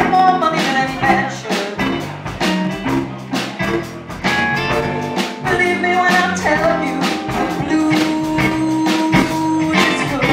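Live blues-rock band playing: electric guitar over a steady drum-kit beat, with bent guitar notes at the start and long held notes near the end.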